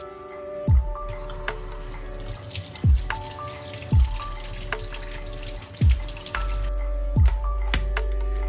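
Water running from a kitchen faucet over hands rinsing an apple in a stainless steel sink, starting about a second and a half in and stopping near the end. Background music with a deep, regular beat plays throughout.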